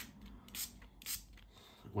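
Stampin' Spritzer pump-spray bottle misting water onto an inked clear stamp in two short sprays about half a second apart, after a click at the start; the water activates the ink for a watercolour effect.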